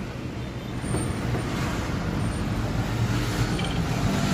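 Steady low rumble of background road traffic.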